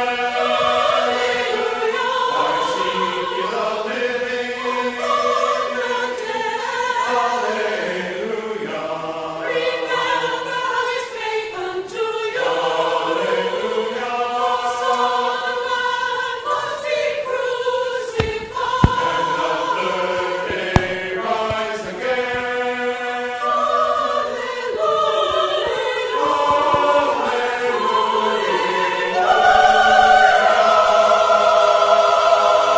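Church choir singing together in sustained, held phrases. Two brief sharp clicks about two seconds apart sound near the middle.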